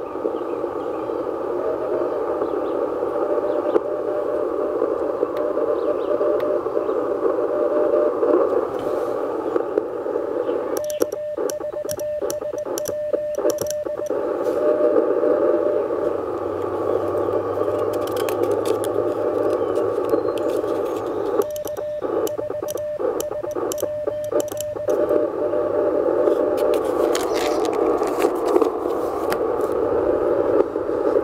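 Shortwave transceiver's speaker hissing with receiver band noise, broken twice by a few seconds of Morse code in a steady keyed tone. The band noise drops out behind each burst, as a break-in CW rig does when it transmits: the operator's sidetone while he sends with the paddle key.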